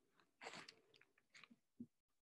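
Near silence, broken by a few faint, irregular clicks and rustles, with a soft low thump near the end.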